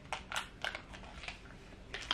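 KitKat chocolate-coated wafer bar being bitten and chewed: a run of short crisp crunches, fainter in the second half.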